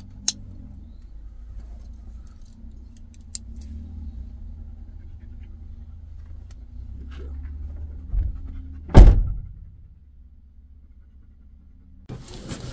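Sharp clicks and light metallic jingles of a dog harness being buckled on, then a thump and a Ford Transit van's driver door slammed shut about nine seconds in, the loudest sound.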